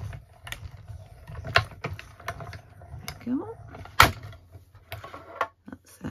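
A hand-cranked mini die-cutting machine winding acrylic cutting plates through its rollers with a low rumble and handle clicks. This is followed by knocks and clatter as the plates are taken out, with one sharp knock about four seconds in.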